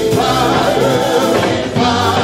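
Women singing a gospel worship song together into microphones, voices held and gliding in long sung lines.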